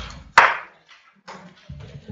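Microphone handling noise: a sharp rustling bump about half a second in that dies away quickly, then low thuds near the end, as the microphone is passed on.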